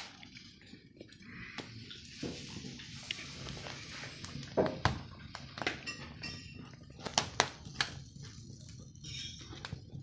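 Meat sizzling on the grate of a wood-fired brick barbecue over burning logs, with scattered sharp pops and crackles from the fire. The hiss is strongest in the first half.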